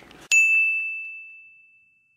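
A single bright bell-like ding sound effect, struck about a third of a second in and ringing out in one clear tone that fades away over about a second and a half, with the room sound dropped out behind it.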